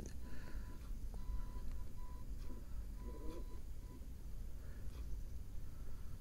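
Quiet open-air background on the water: a steady low rumble with a few faint clicks, and a faint run of short beeps at one pitch through the first four seconds.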